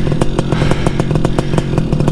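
Two-stroke paramotor engine running steadily at idle, a low hum with a fast, even pulse.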